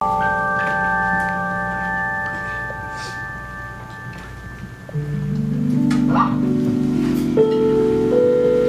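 Electric stage keyboard playing a held chord with a bell-like tone that fades over about four seconds. About five seconds in, a new chord is built up note by note and sustained.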